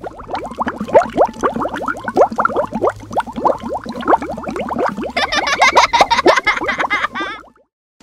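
Cartoon bubble-machine sound effect: a dense run of quick pitched bloops, several a second, turning higher and brighter about five seconds in, then cutting off suddenly.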